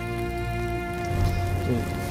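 Television drama soundtrack: a held, sustained score chord over the steady crackle and hiss of large fires burning on funeral pyres.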